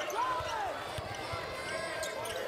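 Basketball being dribbled on a hardwood court, a few low thuds about every half second, over the murmur of an arena crowd.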